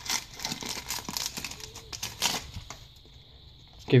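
Foil wrapper of a Pokémon booster pack crinkling and tearing as it is ripped open by hand: a dense crackle for about the first two and a half seconds, then much quieter.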